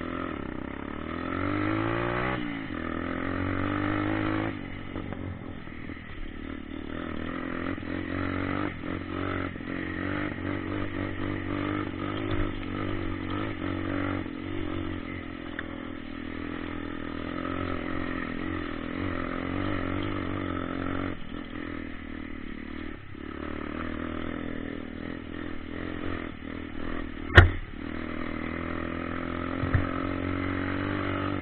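Dirt bike engine running while riding, heard close up, revving up about a second or two in and then holding fairly steady with small rises and falls in pitch. A single sharp knock near the end is the loudest moment.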